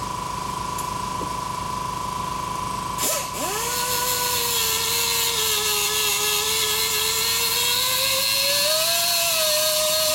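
Pneumatic cut-off tool with a small abrasive disc cutting a steel bolt to length. It starts suddenly about three seconds in and spins up into a steady whine over hiss, the pitch sagging under the cut and climbing again near the end.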